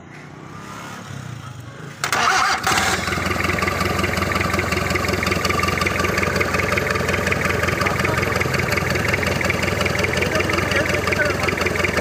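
Turbocharged EFI diesel engine catches suddenly about two seconds in, then runs steadily at idle.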